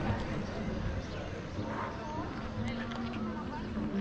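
Outdoor pedestrian street ambience: indistinct voices of passers-by over a continuous background hum.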